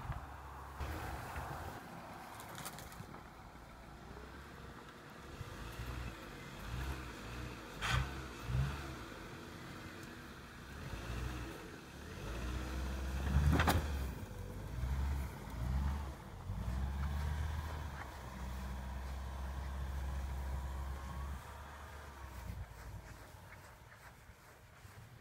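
Dodge Neon's four-cylinder engine running and revving in surges under load as the car pushes heavy wet snow with a plow blade, heard from a distance. A few sharp knocks stand out, the loudest about halfway through.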